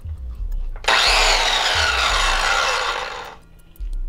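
Handheld electric circular saw running in one loud burst of about two and a half seconds. It starts abruptly about a second in, its whine falls in pitch, and it stops shortly before the end.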